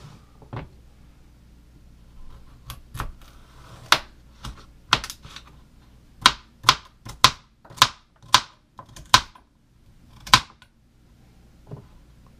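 Kitchen knife chopping carrots on a plastic cutting board: a run of sharp, separate knocks, a few at first and then about two a second through the middle.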